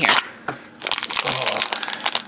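Foil blind-bag wrapper from a Tokidoki Frenzies blind box crinkling and crackling as it is handled, starting about a second in after a brief lull.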